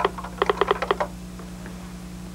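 Computer keyboard being typed on: about a dozen quick keystrokes in the first second, then a steady low hum.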